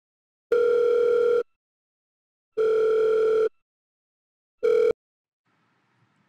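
Outgoing call ringing tone: two steady electronic beeps of about a second each, two seconds apart, then a third cut off short as the call is answered.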